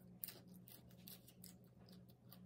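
Faint, irregular crisp crackles of a crunchy lettuce leaf being handled and folded, over a low steady hum.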